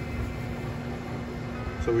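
Steady hum and fan noise of an Electrify America DC fast charger running during a 110 kW charge, with a constant low tone under it.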